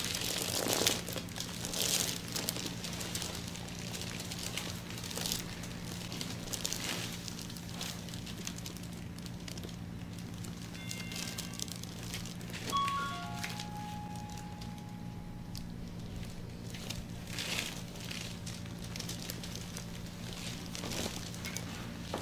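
Plastic-gloved hands sliding and rubbing over oiled skin during a back massage: an irregular crinkling swish with the strokes, loudest near the start and again near the end. It sits over a steady low hum, and a short run of high notes comes about eleven to fourteen seconds in.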